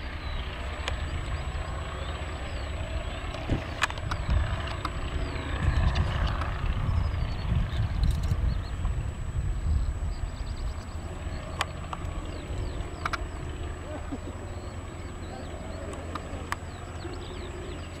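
A biplane's piston engine at takeoff power as the aircraft rolls and climbs away, heard as a distant low drone. The rumble swells in the middle, while the plane lifts off and passes.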